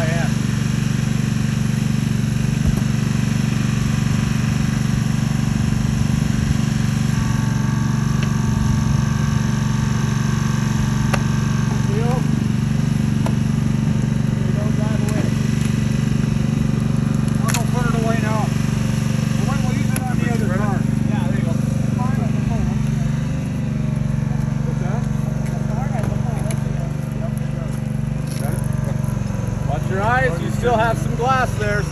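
Small engine of a hydraulic rescue-tool power unit running steadily, powering the spreader as it is worked into the pickup's door. Faint voices come in around the middle and again near the end.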